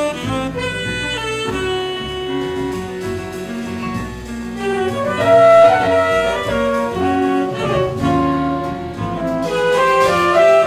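Jazz quintet playing: saxophone and trumpet carrying held melody notes over grand piano, double bass and drum kit.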